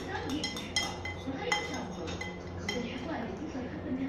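Metal spoons clinking against a plate as the food is scooped up: a dozen or so short, sharp clinks at irregular intervals.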